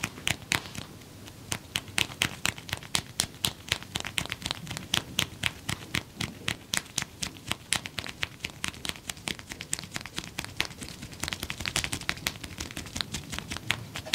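Rapid, sharp clicks and snaps from a barber's hands working the scalp and neck during a head massage, several a second, coming thickest near the end.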